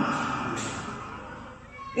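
A man's voice through a microphone trails off at the start, then a pause in which the leftover echo and background noise slowly fade; speech resumes right at the end.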